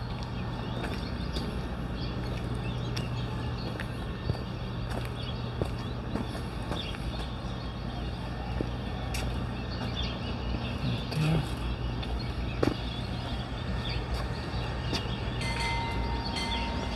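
A steady low mechanical hum with a few faint clicks and taps.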